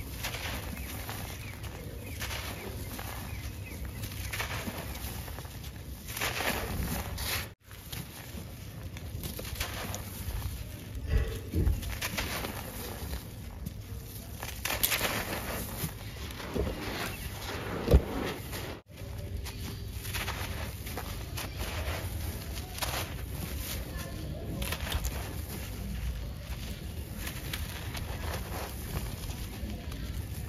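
Hands crushing and crumbling dry lumps of sand-cement: irregular gritty crunching and crackling, with grains trickling onto the floor. A single sharp knock comes a little past halfway.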